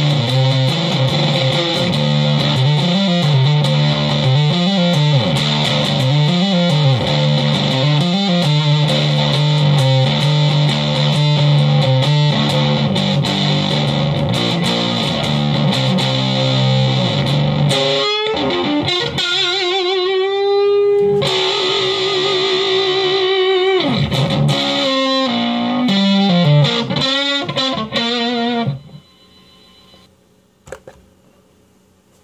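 Electric guitar played through a Behringer SF300 Super Fuzz pedal, thick and fuzzy. For the first half it holds heavy sustained low notes. After that it plays single lead notes with wide vibrato and bends, and the sound stops suddenly near the end.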